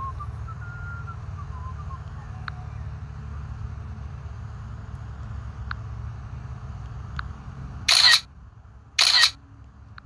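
Two camera-shutter sounds from the drone's control app as photos are taken, each short and loud, about a second apart near the end. A steady low rumble runs underneath.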